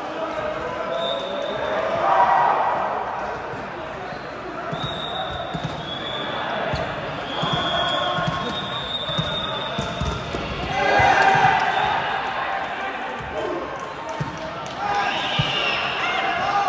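A volleyball bounced several times on the hard court floor, with players' voices calling out, echoing in a large sports hall.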